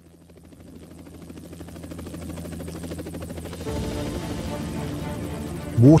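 Helicopter rotor and engine sound fading in and growing steadily louder, with a rapid, even chop. Music chords come in over it a little past halfway.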